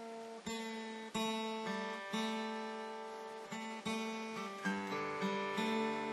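Acoustic guitar in an open G suspended-second tuning, its strings picked one after another with a thumbpick: about eight notes, each left to ring and fade. Among them is the A on the B string tuned down a tone, the suspended note of the chord.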